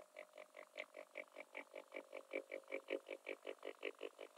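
Sonified gravitational-wave signal from a simulation of a small black hole spiralling into a much bigger one (an extreme-mass-ratio inspiral of the kind LISA would detect). It is heard as a faint, rapid train of even pulses, about six a second.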